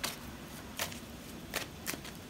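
A tarot deck being shuffled by hand: a soft rustle of cards with a few sharper card clicks less than a second apart.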